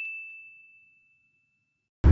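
A single bright, bell-like 'ding' sound effect, struck just before and ringing out with a steady fade until it dies away near the end.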